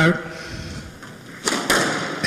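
Two sharp knocks close together about a second and a half in: a squash ball struck by a racket and hitting the court wall as play restarts. Before them only low background noise.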